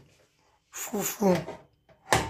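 A person's voice: one short, breathy vocal utterance of about a second, starting shortly after a brief pause.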